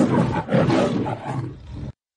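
A loud, rough roar in two long swells, cut off suddenly near the end.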